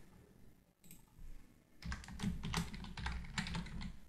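Typing on a computer keyboard: quiet at first with a couple of faint clicks, then a fast run of keystrokes from about two seconds in.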